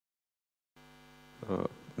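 Dead silence, then about three-quarters of a second in a faint, steady electrical mains hum from the hall's sound feed comes in. Near the end there is a short spoken 'uh'.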